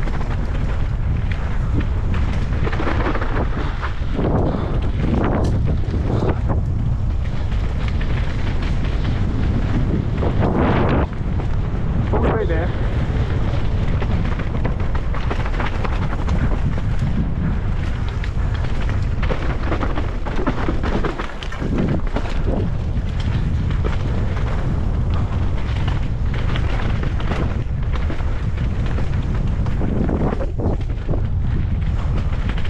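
Wind buffeting the microphone over the rolling noise of a mountain bike's tyres on a loose, rocky dirt trail at speed, with scattered knocks and clatter from the bike hitting rocks and roots.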